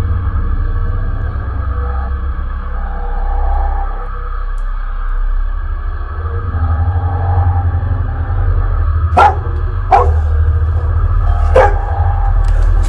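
A loud, steady low droning rumble with a faint held hum above it. Near the end, three short sharp sounds break in, under a second apart.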